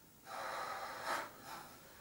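A woman's deep, noisy gasping breath through an open mouth, lasting about a second, followed by a shorter breath.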